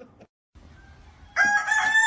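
A short gap of silence at a cut, then about one and a half seconds in a loud rooster crow, a held cock-a-doodle-doo that runs on past the end.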